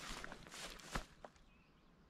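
Footsteps swishing and crunching through tall dry grass, with the grass brushing against the walker's legs. The sharpest step comes about a second in, and the walking stops shortly after.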